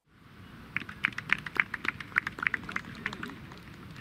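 Scattered hand clapping from a small group of spectators, a quick irregular run of claps lasting about two and a half seconds, over faint outdoor murmur; the sound fades in from silence at the start.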